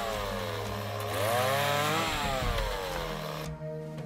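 Two-stroke chainsaw cutting into a log, its engine pitch sinking, rising, then sinking again through the cut. It cuts off abruptly about three and a half seconds in, and background music takes over.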